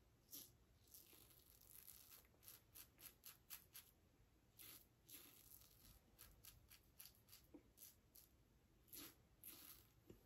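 Faint scraping of a Muhle Rocca stainless steel double-edge safety razor cutting lathered stubble on an against-the-grain pass: a quick, irregular series of short strokes.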